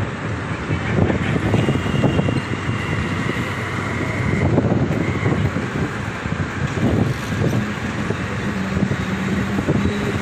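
Road traffic noise and wind on the microphone, heard from a moving two-wheeler in city traffic: a steady, rough noise without any clear single event.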